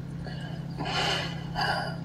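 Two short, breathy exhalations from a person, about a second in and again near the end, over a steady low hum.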